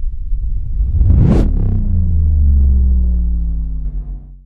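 Cinematic logo sound effect. A low rumble swells into a whoosh about a second in, then settles into a deep, sustained boom whose tones slowly fall as it fades out.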